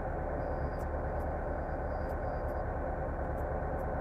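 Carbureted car engine idling steadily, heard from inside the cabin. It runs on 80-octane petrol that the owner blames for its stalling and valve knock.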